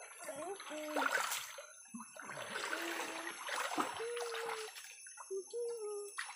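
Shallow stream water splashing and sloshing in irregular surges as people wade through it.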